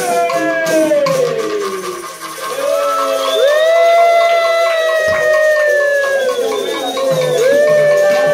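Several voices together hold long, sliding sung notes, first gliding down, then one long note of about four seconds that rises at its start and falls away at its end, with a shorter one near the end. Capoeira percussion with shaken caxixi rattles is fading out early on beneath them.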